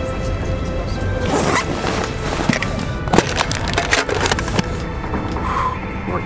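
Clicks and rubbing of fingers handling a small metal case, starting about a second in and stopping shortly before the end, over background music.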